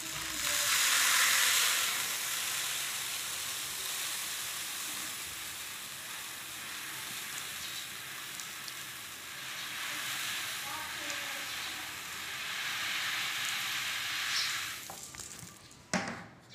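Uncooked rice grains poured in a continuous stream into a black basin: a steady hissing rush of grains, loudest about a second in, easing and swelling again, then tapering off shortly before the end as the pouring stops.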